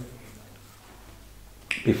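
Quiet room tone of a church interior with a faint steady low hum, broken near the end by a short sharp click, then a man starts speaking.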